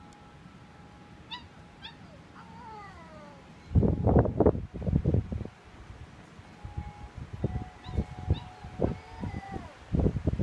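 Basset Hound puppy howling in high, falling notes, with one long held howl that drops in pitch near the end, while metal wind chimes ring with a few struck notes. Gusts of wind buffet the microphone loudly in the middle and again toward the end.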